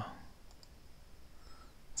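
A couple of faint computer mouse clicks about half a second in, over quiet room tone.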